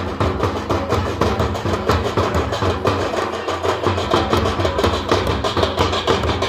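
Live folk drumming: a mandar, the red barrel-shaped hand drum, played together with a large bass drum beaten with a stick, in a fast, steady dance rhythm.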